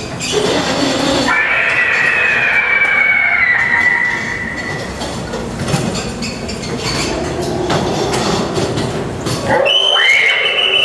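Haunted-house dark-ride car rattling and clacking along its track. About a second in, a high squeal starts and falls slightly in pitch over about three seconds.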